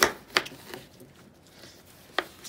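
Knife chopping through a pineapple and knocking on a wooden cutting board: two sharp knocks about a third of a second apart at the start, then a fainter one.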